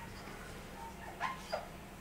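Whiteboard marker squeaking on the board while writing: two short squeaks, each falling in pitch, over faint room hum.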